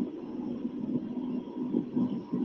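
A man's voice speaking faintly and continuously in the background, heard through loudspeakers with a low steady hum: the original speaker of the talk, beneath a pause in the translation.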